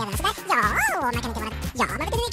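A man's voice speaking over background music with a steady low bass line.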